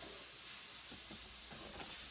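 Grated carrot, cabbage and mushrooms sizzling faintly in a large skillet as they are stirred and lightly sautéed, with a few light scrapes of the utensil against the pan.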